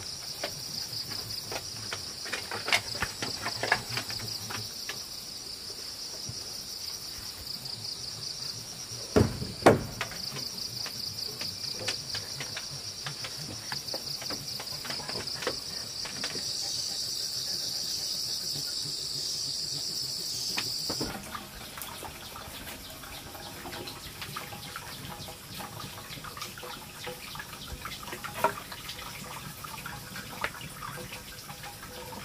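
Insects chirring in a steady, high, finely pulsing drone that cuts off suddenly about two-thirds of the way through. Scattered knocks and clicks run through it, with one loud thump about nine seconds in.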